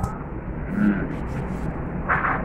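Steady low background rumble of a restaurant dining room, with faint distant voices in the middle and a short knock at the very start.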